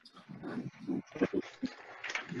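Several people reciting the opening words of the Pledge of Allegiance together over a video-conference connection, faint and garbled.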